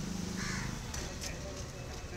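Crows cawing, with one short call about half a second in, over faint street background noise.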